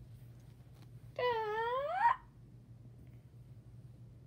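A child's drawn-out "uhh" of about a second, starting a little after one second in, high-pitched and sliding down then up in pitch, over a faint steady low hum.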